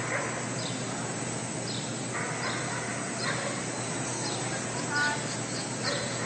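Dogs barking now and then in short, separate bursts over steady background noise.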